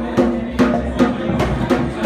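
Djembe-style hand drum struck with bare hands in a steady rhythm, about two strokes a second.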